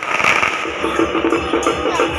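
Procession percussion beating a fast, even rhythm of about six strokes a second, with firecrackers crackling underneath.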